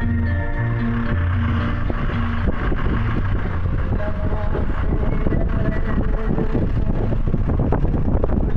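Organ-like music with held chords stops about two and a half seconds in, leaving the rumble of a vehicle driving on a rough unpaved road, with frequent short knocks and rattles from the bumps.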